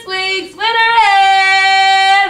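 A girl singing alone with no accompaniment: a short note, a brief break, then one long steady held note.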